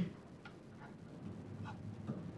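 Pen writing on paper: a few faint, scattered ticks and scratches as strokes are drawn, after a brief louder sound at the very start.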